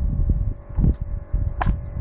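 Wind buffeting the microphone as a low, uneven rumble, under a faint steady hum. A thump comes about a second in and a sharp click shortly after.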